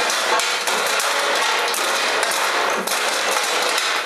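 A wooden mop handle repeatedly bashing a ceiling chandelier with glass shades: a rapid, irregular run of knocks and clattering glass.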